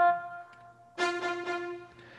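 Electronic home organ sounding one held note, then after a short break the same note again in a brighter voice, as the player switches from the oboe voice to the string voice.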